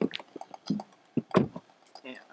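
Handling noises of someone getting into a car's driver's seat: a string of clicks and knocks from the door and cabin trim, the loudest a deeper thump about one and a half seconds in.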